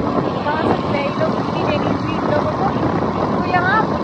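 Steady rush of wind across the microphone, mixed with the running engine and road noise of a moving motorbike.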